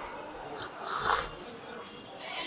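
A man taking a drink from a glass close to the microphone: two short, faint sips, about half a second and about a second in, the second the louder.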